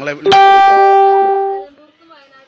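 A single loud, steady musical tone held at one pitch for about a second and a half. It starts sharply and then fades away.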